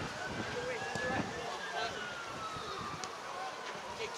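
Open-air football pitch ambience: faint, scattered calls of players, with a faint siren tone that rises slowly over the first second and then falls steadily to the end.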